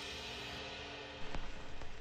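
Rock band's final chord, with electric guitar and cymbals, ringing out and fading away. About a second in, a crackling noise with scattered clicks starts.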